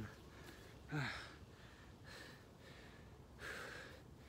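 A man breathing hard, worn out partway through a long set of push-ups: a short voiced gasp that falls in pitch about a second in, then a long breath near the end.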